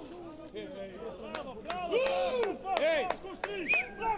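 Men shouting on the touchline after a goal, short rising-and-falling calls one after another, with a few sharp hand claps among them.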